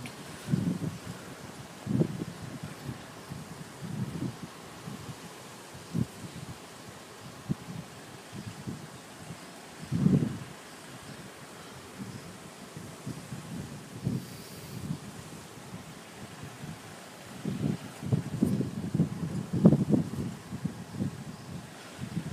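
Strong wind buffeting the microphone in uneven gusts, the heaviest about two seconds in, about ten seconds in, and again near the end.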